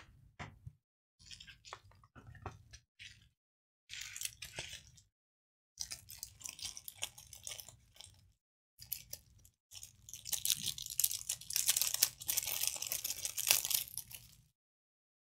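Crinkly plastic packaging rustling and crackling in short, irregular bursts as a new phone screen is unwrapped from its bubble wrap and plastic bag. The crackling turns dense and loudest over the last few seconds as the plastic is peeled away.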